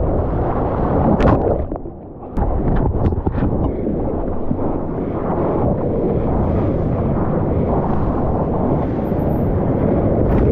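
Surf churning and rushing around a camera at the water's surface, heard as a constant heavy rumble of water and wind. The sound dips briefly about two seconds in, then a few sharp splashes break through.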